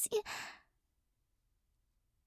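A woman's short, breathy sigh right after the word "You...".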